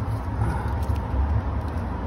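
Steady low outdoor rumble, with a few faint ticks.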